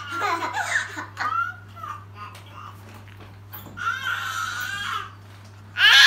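A toddler laughing and squealing in short high-pitched bursts, with a longer held squeal in the second half and the loudest burst of laughter at the very end.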